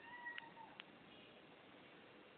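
A cat's faint meow: one short, steady cry of well under a second near the start, with a couple of faint clicks.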